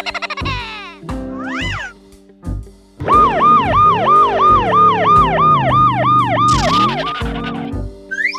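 Police siren wailing in a fast rise-and-fall, about four cycles a second, from about three seconds in for some four seconds, over background music. Before it there are short sliding cartoon sound effects.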